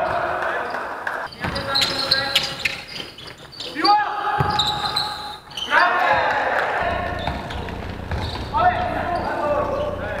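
Live game sound of a basketball game in a sports hall: the ball bouncing on the court while players' voices call out in short bursts.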